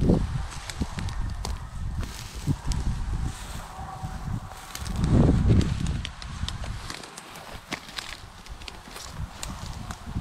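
A German shorthaired pointer breathing hard, heard very close through a camera strapped to its back, with a heavier surge of breath about five seconds in. Grass brushes against the rig, with scattered small clicks.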